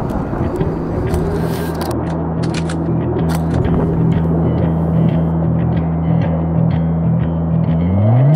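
Intro music: low sustained synth-like tones stepping back and forth in an even pattern and building, then gliding up in pitch near the end. Scattered light clicks sound over it.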